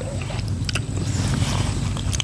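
Steady low rumble of wind on the microphone, with a few faint clicks from hands tearing apart a boiled eel.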